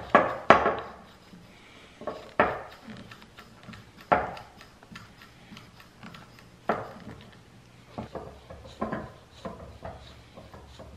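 Hand pump of a Corky needle-type air-pressure cork extractor being worked, its plunger clacking sharply at the end of each stroke, a stroke every two seconds or so. The pumping is not pushing the cork out.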